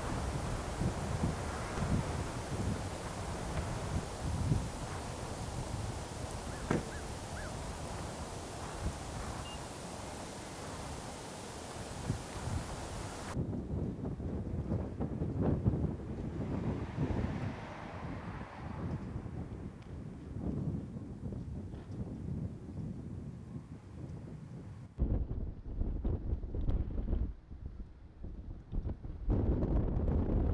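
Cold wind buffeting an outdoor microphone in irregular low gusts. About halfway through it drops abruptly to quieter outdoor ambience, then returns as heavy gusty rumble near the end.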